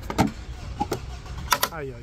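Sharp plastic clicks and knocks as the snap-fit cover of a wall-mounted fibre-optic distribution box (PDO) is unlatched and pulled open, the loudest clicks about a fifth of a second in and again about a second and a half in.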